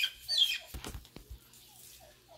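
Wild turkeys calling: two short, high, falling calls in the first half second, then a few low thumps and faint soft clucks repeating a few times a second.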